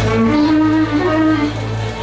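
Live gambus ensemble playing an instrumental passage: a violin carries long held melody notes over plucked strings and bass guitar.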